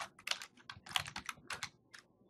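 Computer keyboard typing a short word, a quick run of about a dozen keystrokes that stops shortly before the end.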